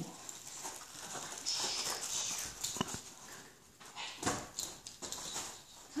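A small dog moving about at close range, with scattered light clicks and rustles and a short cluster of knocks about four seconds in.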